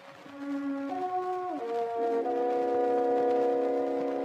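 Orchestral accompaniment on a 1909 acoustic-era Victor 78 rpm record: wind instruments play a short phrase of held notes that step in pitch a few times, between the contralto's sung phrases, over record surface hiss.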